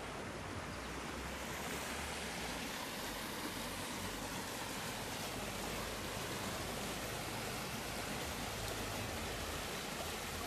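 Canal water rushing and churning past a collapsed section of the canal's concrete embankment, a steady rush that grows a little fuller about a second and a half in.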